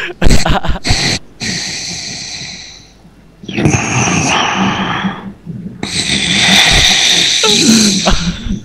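A sleeping person snoring, heard through a Skype call: three long noisy breaths of about two seconds each, after a few sharp clicks in the first second.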